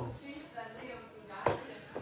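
A small rubber ball striking with a single sharp slap about one and a half seconds in, against faint room sound and distant voices.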